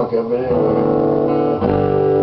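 Acoustic guitar chords strummed and left ringing, with a man's voice singing a held, wavering note at the start that fades into the chord. A new chord is strummed about one and a half seconds in.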